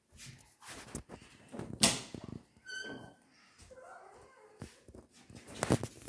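Footsteps and camera-handling knocks while walking through a house, with a brief high squeak about three seconds in.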